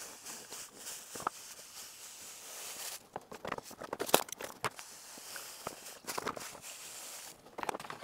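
Powdered zinc plating salt pouring from a plastic bag into a bucket of liquid, a soft steady hiss. Around the middle it gives way to crinkling of the plastic bag and a few light clicks, then the hiss resumes.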